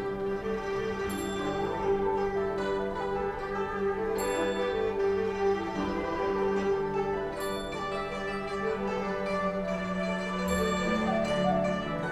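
A Chinese traditional orchestra playing a slow, calm passage: plucked strings sound over steady held notes from the bowed strings and winds.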